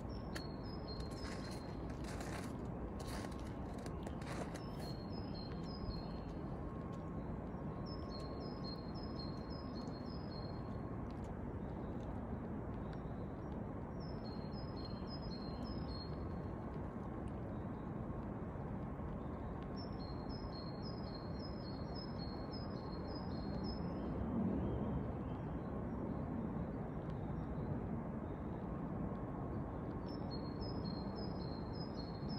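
A small songbird singing short phrases of quick, repeated high notes, a phrase every few seconds, over a steady low background rumble. A few sharp clicks come in the first few seconds.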